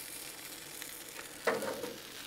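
Grease and food sizzling on a hot Blackstone flat-top griddle: a steady, even hiss. A short voice sound comes in about one and a half seconds in.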